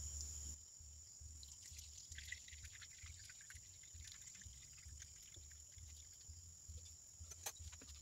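Very faint pouring of liquid from a glass vessel into a fluted paper filter in a funnel, with a few light ticks, over a steady low hum.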